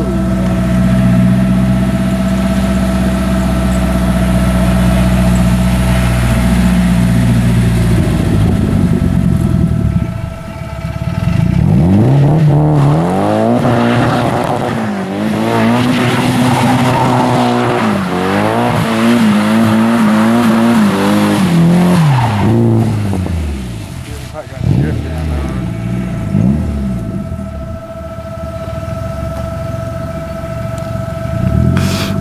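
Nissan S13 drift car's engine holding a steady note, then, from about a third of the way in, revving up and down again and again through a long drift, with tyre squeal. It goes quieter and more broken near the end.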